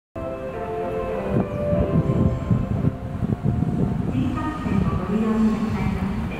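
Steady low rumble of a Shinkansen train on the line, with a public-address voice over it in the second half.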